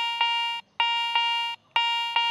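Garrett ACE 200i metal detector sounding its high audio tone three times, about a second apart, as the coil passes back and forth over a sterling silver shilling. The tone is steady and consistent on each pass: the detector's signal for a high-conductivity target.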